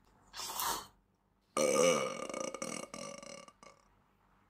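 A short rushing noise, then a long, loud burp lasting about two seconds, its pitch wavering.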